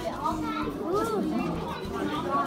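Children's and adults' voices chattering over one another in a crowd, with high children's calls about a second in.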